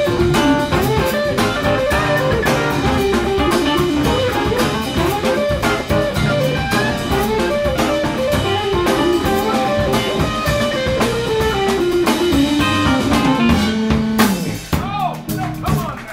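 Live improvised jazz-blues band of electric guitar, keyboard, drum kit, bass and saxophone playing. A melody line runs downward to a held note, and the band stops on a final hit about fourteen seconds in.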